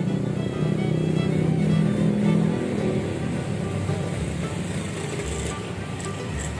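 Background music over street traffic: a motor vehicle passes close by, its engine rumble loudest in the first two or three seconds and then fading.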